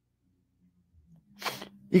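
A man's quick, sharp intake of breath about one and a half seconds in, just before he speaks again.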